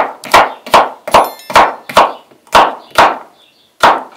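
Kitchen knife slicing a cucumber on a wooden cutting board: a steady run of sharp chops, about two to three a second, with a short gap just before the last one.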